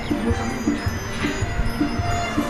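Cartoon background music with a steady beat and twinkling chime-like notes.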